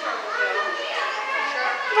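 Indistinct chatter of other visitors in the background, children's voices among them, talking and calling out.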